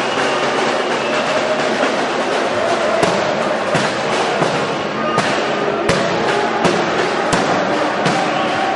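Loud, dense background noise in a large reverberant hall with music in it, broken by several sharp bangs or cracks in the middle and latter part.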